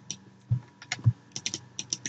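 Light, irregular clicking at a computer, like keys or a mouse being pressed, about eight clicks in two seconds.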